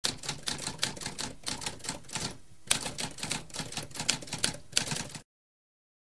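Typewriter keys clacking in a quick, uneven run of strikes, with a short pause about halfway through, then cutting off suddenly about five seconds in.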